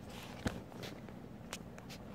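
Two small dogs, a teacup schnauzer puppy and a small long-haired dog, scuffling in play on a dog bed. There is one sharp knock about half a second in and a few lighter clicks later on.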